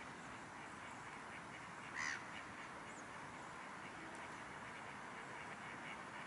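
A single short, nasal waterfowl call about two seconds in, over a steady low background hiss.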